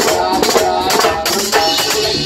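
Live salsa band playing: a metal güira scrapes a fast, even rhythm over congas, timbales and electric guitar.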